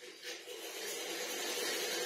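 Wire whisk beating butter and sugar in a ceramic bowl, heard as a steady scratchy hiss.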